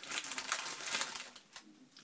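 Plastic snack wrapper crinkling as it is handled, a quick run of crackles that dies away after about a second and a half.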